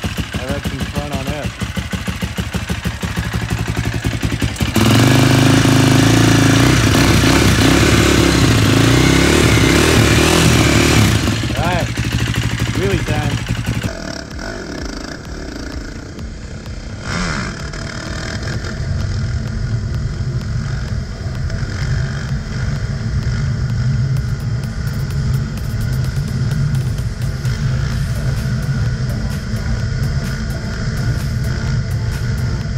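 KTM 450 SX quad's single-cylinder four-stroke engine running with a fast, pulsing beat just after a reluctant start, then much louder for about six seconds from about five seconds in. After a sudden change near the middle, the engine runs steadily under way on the road, heard from on board.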